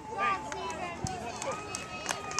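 Several voices of youth-baseball spectators and players talking and calling out over one another, with a few sharp knocks.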